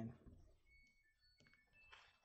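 Near silence, broken by a few faint, short high beeps at differing pitches and one soft click.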